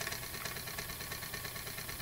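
Homemade reed-switch pulse motor running steadily, its magnet rotor spinning with a fast, even pulsing as the coil fires. The coil is set close to the rotor, and the motor is spinning fast.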